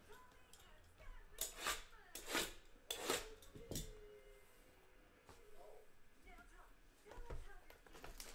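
Cardboard trading-card hobby boxes being handled on a table: a handful of short knocks and scrapes in the first four seconds, then quieter handling.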